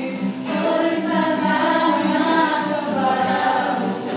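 A small mixed group of voices singing a scripture song together, accompanied by a strummed nylon-string acoustic guitar.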